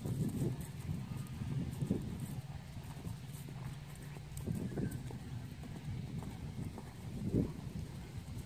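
Hoofbeats of a horse cantering on grass, dull thuds over a steady low rumble.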